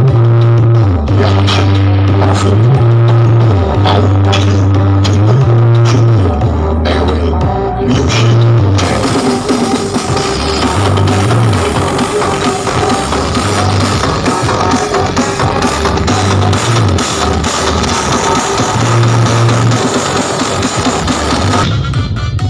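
Music played very loud through a large truck-mounted sound system speaker stack, led by a heavy bass line of held and sliding low notes. About nine seconds in, the mix fills out with dense high percussion.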